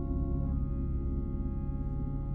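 Ambient electronic drone: many steady, sustained tones from layered sine oscillators and organ, loudest in the low register. The higher tones change about half a second in.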